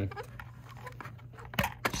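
Faint handling noise and two short clicks about a second and a half in, as a USB-C cable's plug is pushed into the DJI Mini 2 drone's charging port.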